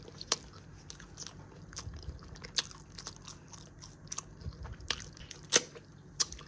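Faint, irregular crisp crunches and clicks, with a few sharper ones about halfway through and near the end, over a low steady hum.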